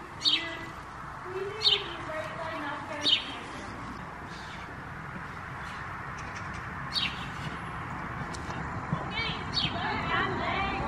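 A small bird chirping: five single, short, high chirps that fall in pitch, a second or more apart, over faint low background noise.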